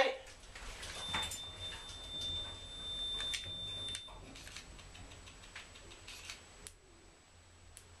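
Stannah passenger lift car travelling down a floor, heard from inside the car: a faint low hum with scattered light clicks and a steady high tone for about three seconds near the start. The hum dies away about seven seconds in as the car comes to a stop.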